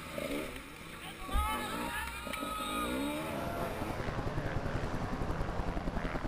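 Enduro dirt bike engine revving up and down as the rider works the throttle over rough ground, heard close from the bike's onboard camera. It settles into a fast, steady pulsing run in the second half.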